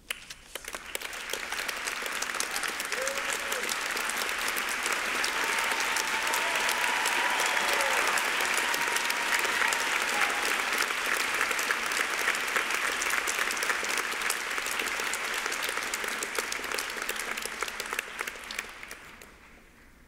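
Audience applauding: the clapping builds up over the first couple of seconds, holds steady, and dies away near the end.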